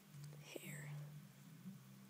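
Faint whispering close to the microphone, about half a second long, over a low steady hum.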